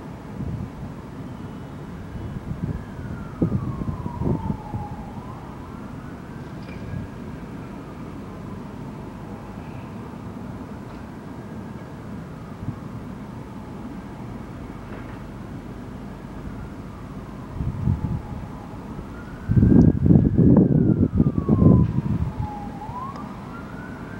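A distant emergency vehicle siren wailing, its pitch rising and falling slowly over several seconds. Near the end a loud low rumbling burst of noise lasts about two seconds.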